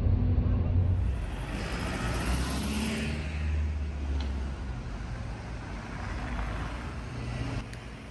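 Street traffic: a double-decker bus's engine running low as it passes, over a steady hiss of other vehicles. The engine sound eases off about halfway through.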